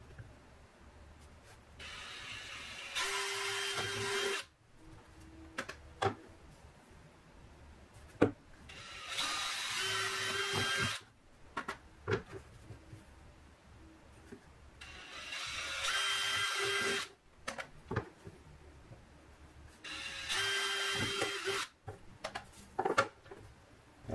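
Cordless drill boring four holes through a thin wooden plate, one after another, each run lasting about two seconds. Sharp clicks and knocks come between the holes.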